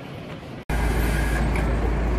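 Quieter street background that changes suddenly, about two-thirds of a second in, to a loud, steady low rumble of road traffic as an open-top double-decker sightseeing bus drives past close by.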